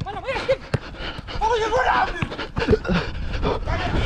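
A man laughing and panting hard while running, with other voices calling around him. Wind rumbles on the body-worn microphone throughout, under many short thuds.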